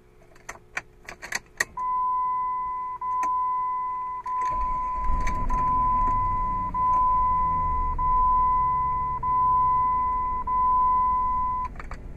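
Keys clicking and jingling at the ignition, then a dashboard warning chime sounding as a steady repeated tone, about eight times, each a little over a second long. About four and a half seconds in, the 2002 Jeep Grand Cherokee's 4.7-litre V8 starts and idles as a low rumble under the chime.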